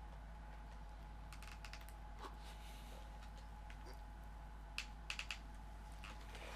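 Faint, sharp clicks and taps from hand work on a vinyl pattern sheet laid over a car center console: a scattered few, then a quick run of four about five seconds in. Under them runs a steady faint hum.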